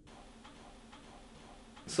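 Faint ticks over a low, steady hiss of room tone.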